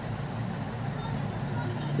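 A steady low hum under faint background noise, with no speech.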